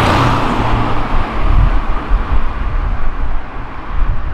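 A Mercedes-Benz CLA drives past and away. Its engine note is steady at first, then breaks into a deep, uneven exhaust rumble that fades as the car moves off.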